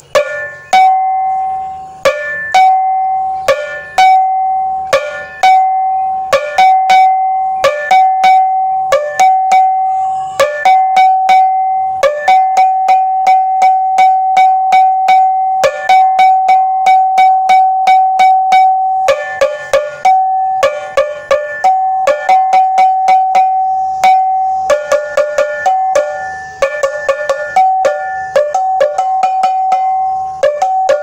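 Hand-held metal gong, cowbell-like, struck with a stick and ringing on after each blow. Single strikes about every second and a half at first, quickening to a fast steady beat after about twelve seconds, then bursts of rapid strikes near the end.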